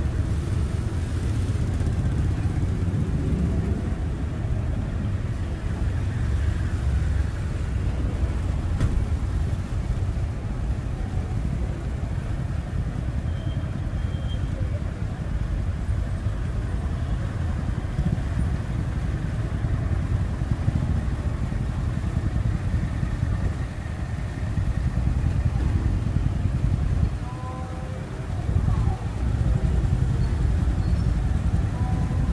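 Steady city street traffic: a dense stream of motorbikes and cars running past, a continuous low engine rumble that dips briefly near the end.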